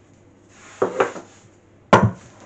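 Metal flour dredger shaken over rolled pastry: a faint sprinkling hiss with two knocks about a second in, then a sharp clack near the end as the dredger is set down on the worktop.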